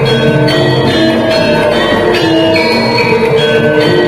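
Gamelan accompaniment for a jaran kepang dance: bronze metallophones ring out a melody in struck notes, the pitch stepping about twice a second.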